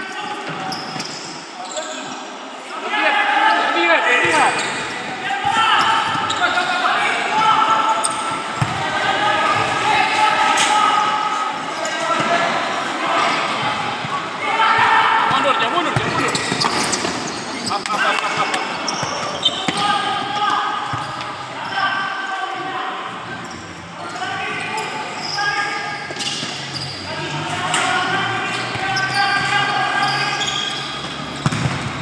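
Indoor futsal play: players shouting and calling to each other across an echoing sports hall, with the ball being kicked and bouncing on the court floor.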